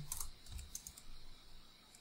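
Typing on a computer keyboard: a quick run of faint key clicks that thins out toward the end.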